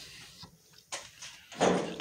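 Quiet handling noise with a faint click, then near the end a bump and a short pained grunt as someone walks into a piece of shop equipment.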